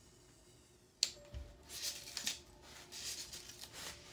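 A hand-held hot wire precision craft tool carving a block of white foam. A sharp click about a second in, then a run of short, uneven scraping strokes as the wire works into the foam and shaves off slivers.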